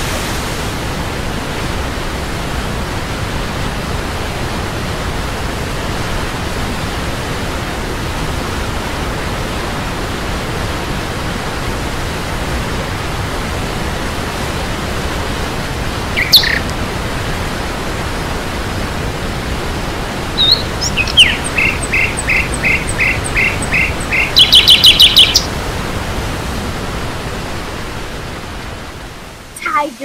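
Waterfall pouring into a shallow pool, a steady rush of water throughout. A bird calls over it: one short chirp about halfway through, then a run of quick repeated notes for about five seconds.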